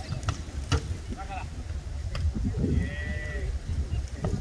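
Wind rumbling on the microphone, with a few sharp smacks of hands hitting a beach volleyball and distant voices calling out.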